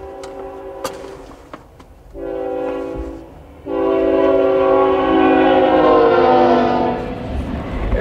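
CSX freight locomotive's multi-note air horn sounding the grade-crossing warning, heard from inside a car: a quieter blast that stops just over a second in, a short blast about two seconds in, then a long, louder blast from about halfway until near the end, its pitch dropping slightly as the locomotive passes. A low rumble from the train runs underneath.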